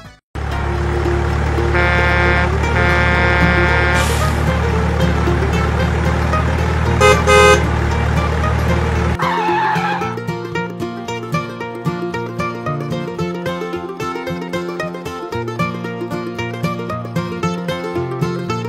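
Electronic sound effects from a toy pickup truck: a steady low engine rumble with a few horn honks and short beeps. About nine seconds in, music with a steady beat takes over.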